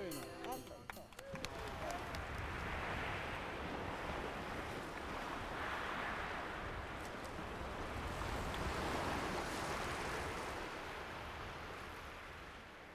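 Sea surf washing in over a shingle beach of pebbles, a steady rush that swells and eases in slow surges about every three seconds.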